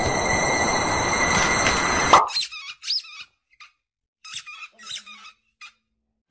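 A loud steady hiss with a thin steady whine, cut off suddenly about two seconds in. Then a run of short high-pitched squeaks with gaps of silence between them.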